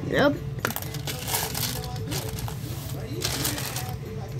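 Jelly beans clicking and rattling as they are picked through in their box, a string of small scattered clicks.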